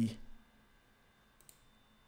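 A man's voice trailing off at the end of a word, then near silence with a single faint click about one and a half seconds in.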